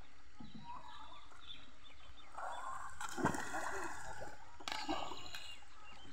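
Fish thrashing and splashing in a seine net hauled up against a wooden boat, in bursts: a long spell of splashing from about two seconds in with a sharp slap in the middle, and a shorter splash near the end.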